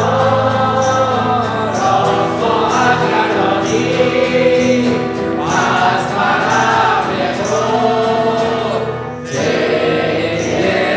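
Live Christian worship song: voices singing together, a man's lead with a woman's voice, over acoustic guitar and stage piano and a steady beat.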